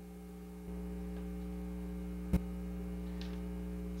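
Steady electrical mains hum, growing a little louder just under a second in, with a single sharp click a little past halfway.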